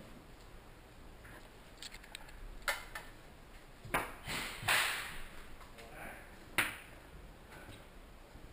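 Four sharp, isolated cracks of airsoft gunfire, the third trailing off in a brief hiss.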